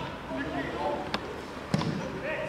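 A football being struck twice, two sharp thuds a little over half a second apart, the second louder, over players' shouts.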